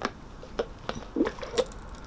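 A few light clicks and knocks of plastic drink cups being handled. Then short mouth sounds of a sip through a metal straw.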